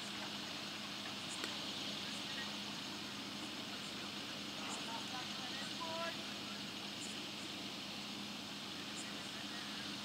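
Steady open-air background noise with a constant low hum, and faint distant voices calling out about five to six seconds in.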